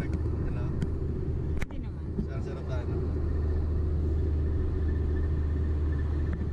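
Steady low rumble of a car driving at highway speed, heard from inside the cabin, with a sharp click about a second and a half in.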